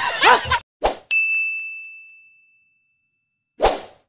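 A single bright ding, the sound effect of an animated subscribe-button outro, struck about a second in and ringing out as it fades over a second or so; a short whoosh comes just before it and another near the end.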